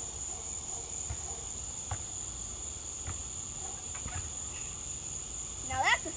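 Crickets chirring steadily in one continuous high-pitched tone, with a few faint low thuds underneath.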